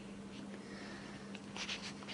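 Quiet room with a steady low hum, and faint rustling of paper lecture notes being handled near the end.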